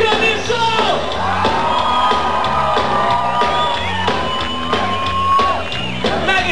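Live punk rock band playing loud, with electric guitar, bass and drums, and a singer holding one long high note over them from about a second in until shortly before the end.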